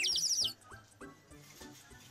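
A brief twinkling sparkle sound effect: a quick run of high, falling chirps lasting about half a second.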